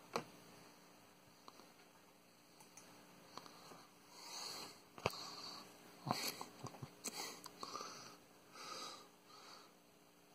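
Quiet handling with soft breathing and sniffing close to the microphone, in several short breaths from about four seconds in, and a few sharp clicks. The drill's motor is not heard running.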